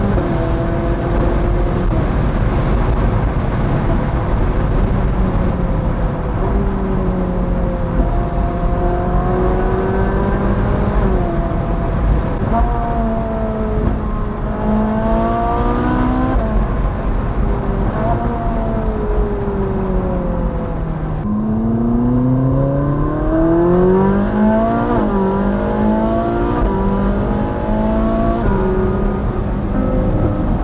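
Ferrari 458 Spider's naturally aspirated V8 under way with the roof down, its pitch repeatedly rising under acceleration and dropping at each gear change. Wind and road noise run underneath. In the second half it climbs through several quick upshifts in a row.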